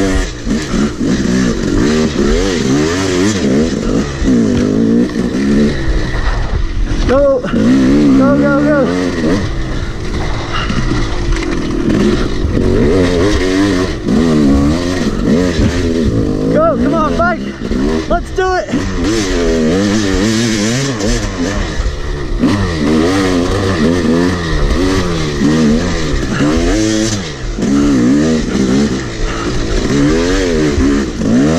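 Yamaha YZ250 two-stroke dirt bike engine, ridden hard, its pitch rising and falling over and over as the throttle is worked. The throttle is chopped briefly a few times.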